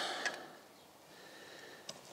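Quiet background hiss with a faint thin steady tone in the second half and a single click just before the end; no grinder running.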